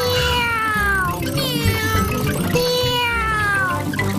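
Cartoon children's voices cheering in three long, high calls that fall in pitch, over upbeat background music.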